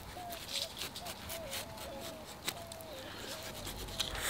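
Pocket knife scoring the rough, sandpapery rind of a ripe mamey sapote: faint short scratching strokes of the blade through the skin. Behind it, a distant animal gives faint, short calls several times.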